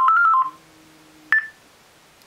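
Short electronic telephone tones stepping up and down in pitch, ending about half a second in, as an incoming call is answered. A faint low hum follows, then a click with a brief higher beep near one and a half seconds.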